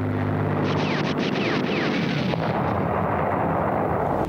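Battle soundtrack of anti-aircraft gunfire and explosions, dense and continuous, over a low engine drone that fades after about a second. Several short falling whines sound in the first half.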